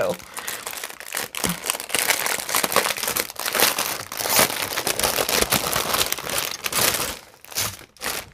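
Clear plastic packaging bag crinkling as hands pull it open and work the bags of diamond painting drills out of it. It makes a dense, continuous crackle that stops abruptly a little before the end, with a few last crinkles after.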